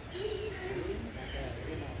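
Indistinct voices of people talking in the background, with bird calls that include cooing, over a low steady rumble.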